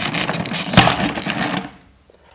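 Motor-driven stirring mechanism of a homemade pot reactor running with a fast mechanical clatter that fades out near the end.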